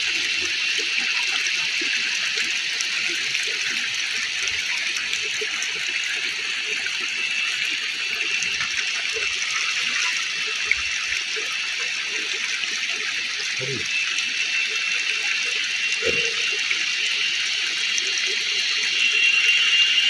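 Steady, high-pitched forest background hiss with a thin held tone running through it, unchanging throughout, with a few faint low sounds near the middle.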